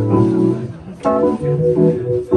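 Live funk band playing: sustained keyboard chords over electric bass, with the singer calling out "yeah" about a second in.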